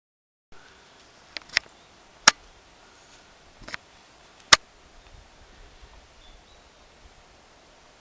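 Walking on a dry, leaf-littered forest trail: a few sharp snaps and clicks over a faint outdoor hiss, the loudest about two and four and a half seconds in.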